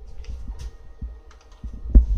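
Scattered light clicks and low bumps of handling noise, with a louder thump right at the end, over a faint steady hum.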